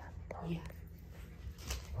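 A softly spoken word over quiet room tone with a steady low hum, with a few faint clicks.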